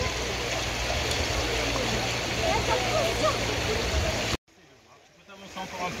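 Shallow river running over stones, a steady rush of water under scattered, indistinct children's voices. The sound cuts out abruptly about four and a half seconds in, then fades back in.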